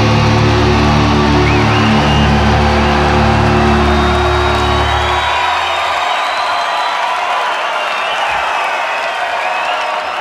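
Heavy metal band's distorted guitars and bass holding the song's final chord live, cut off about five seconds in. A concert crowd cheers, whoops and whistles throughout and carries on after the band stops.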